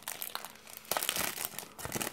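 Clear plastic wrapping around a small product box crinkling as hands handle it and pull it open: irregular crackles that get louder and busier about a second in.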